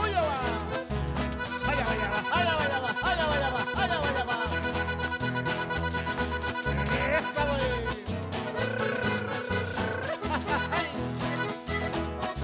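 Live Chilean folk music played through a PA by a band with guitars and accordion, over a steady, regular bass beat, with voices singing over it.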